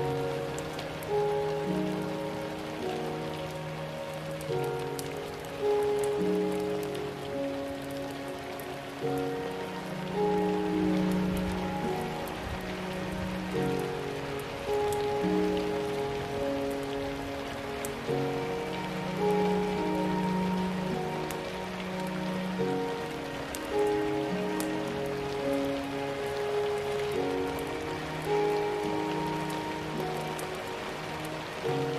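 Background ambience track: steady rain with light raindrop patter under slow, soft music of long held notes that change every second or two.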